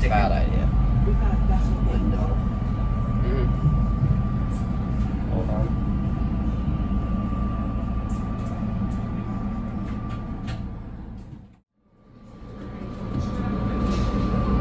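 SEPTA electric commuter train heard from the cab while under way: a steady low rumble of wheels on rail with a constant thin whine. About eleven seconds in, the whole sound dips away to silence and then swells back within a couple of seconds.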